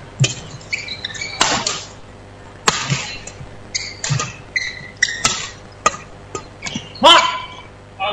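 Badminton rally in a hall: sharp racket strikes on the shuttlecock about once a second, with short high squeaks of shoes on the court. Near the end, a loud shout from a player, the loudest sound, as the point ends.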